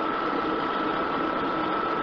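City bus cabin noise: the diesel engine and the ride give a steady drone, with a thin, steady high tone running through it.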